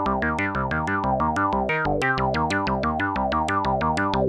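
Doepfer A-100 analog modular synthesizer playing a fast sequenced pattern of short, pitched notes, about seven a second. Each note starts with a sharp attack and its brightness quickly sweeps down, giving a plucky, bouncy sound.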